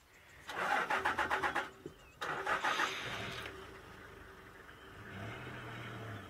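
Vehicle engine cranking with a rapid pulsing, catching about two seconds in, then settling to a steady idle.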